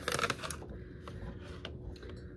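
Crinkling and rustling of a small paper packet being handled in the hands, densest in the first half second and then fainter, with a few light clicks near the end.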